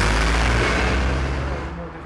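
A van driving past close by: a loud rush of engine and tyre noise with a deep rumble, starting abruptly and fading over about two seconds.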